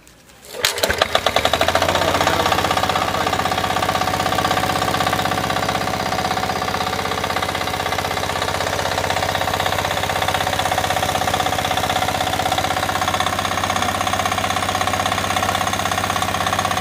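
Kirloskar power tiller's single-cylinder diesel engine rope-started: it catches about half a second in and then runs steadily with an even, fast chug.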